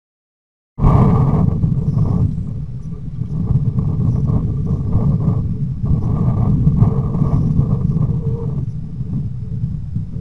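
A loud low rumble that starts suddenly about a second in and swells and eases unevenly, recorded through a trail camera's built-in microphone, with a faint steady whine underneath.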